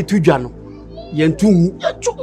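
Short vocal exclamations from a man, with bending pitch, over steady background music.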